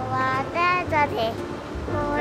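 A child's singing voice in a bright children's song over backing music with a steady bass.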